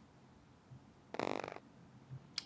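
Near silence, then about a second in a brief, low, creaky vocal sound from a woman, lasting about half a second.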